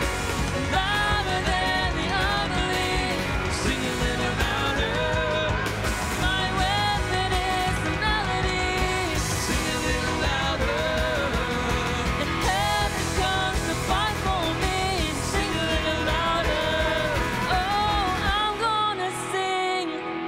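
Live worship band playing: several voices singing the melody together over electric guitar, bass, drums and keyboard. Near the end the low end of the band drops away, leaving the voices over lighter backing.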